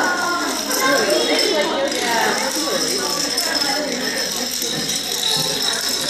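A long run of dominoes toppling in sequence, a continuous clattering rattle. Under it, many children's voices chattering at once.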